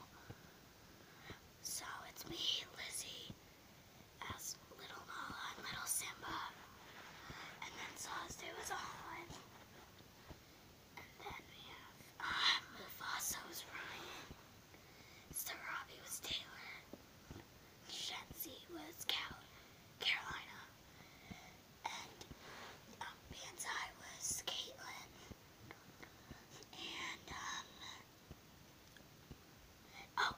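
A young boy whispering in short breathy phrases, with pauses between them.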